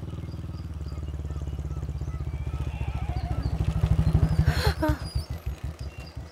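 A motorcycle engine running as the bike rides past, with an even pulsing beat. It grows louder to a peak about four and a half seconds in, then fades.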